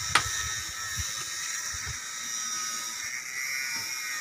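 A steady, high-pitched drone of several tones held throughout, with a sharp click just after the start and a few faint low knocks in the first two seconds.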